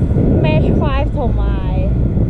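Wind buffeting the microphone in flight under a paraglider: a loud, steady low rumble. Over it, from about half a second in, a high voice calls out in short gliding tones.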